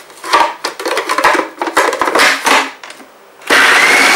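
Plastic lid of a food processor clicking and knocking as it is fitted and locked, then about three and a half seconds in the motor switches on with a loud steady whirr and a whine that rises slightly as it comes up to speed, blending rocket, cashews, basil and oil for pesto.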